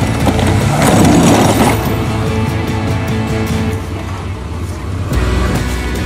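Music playing over the running engine of a Chevrolet Blazer as it pushes against a plastic kids' ride-on Jeep, with a louder rough burst about a second in.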